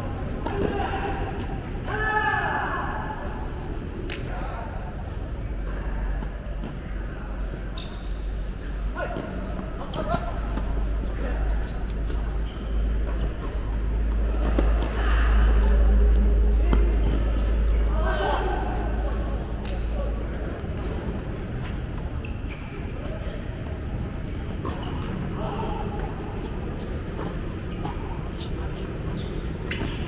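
Tennis balls struck by rackets during doubles rallies, sharp single hits with gaps between them, mixed with people's voices calling out on court. A steady low rumble runs under it and stops about two-thirds of the way through.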